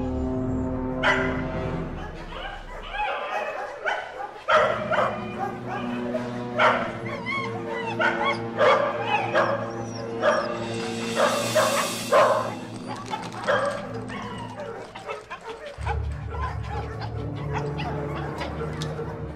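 Several dogs in pound cages barking and yelping, many overlapping barks from about a second in, thinning out near the end, over a steady film score.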